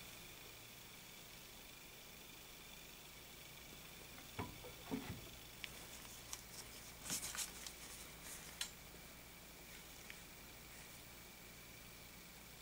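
Mostly quiet room tone with a faint steady high hum. In the middle, a short run of faint clicks and light taps as a paintbrush is worked in the small metal paint cup of an airbrush and handled.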